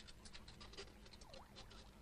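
Faint rapid scratching and pattering of rats scurrying, with a brief squeak a little past the middle.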